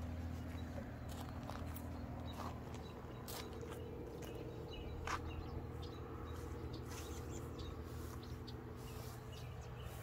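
Outdoor ambience: a steady low hum under light footsteps and scuffs on mulch and gravel, with scattered clicks and a few faint bird chirps; one sharper click comes about five seconds in.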